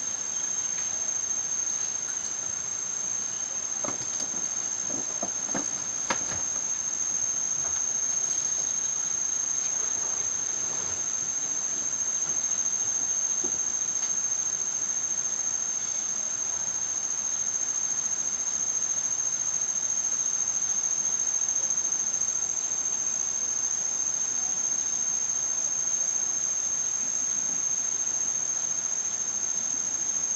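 Steady, unbroken high-pitched insect drone, holding one tone throughout, with a few faint clicks about four to six seconds in.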